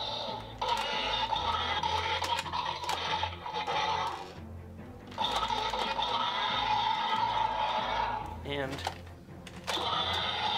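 Electronic roar sound effects from a Mattel Destroy N Devour Indominus Rex toy, played in bursts of about three seconds with short quiet gaps between them. Sharp plastic clicks run through the roars.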